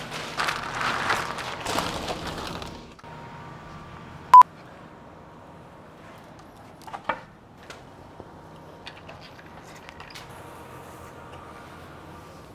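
A black plastic rain cover rustles as it is pulled over dumbbells for about three seconds. Then a single short, loud electronic beep sounds a little over four seconds in, followed by faint scattered clicks.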